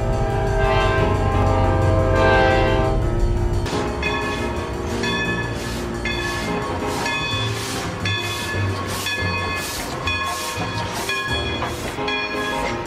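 Diesel locomotive's multi-chime air horn sounding over engine rumble for about three and a half seconds. Then a steady rhythm of sharp strokes, about two a second.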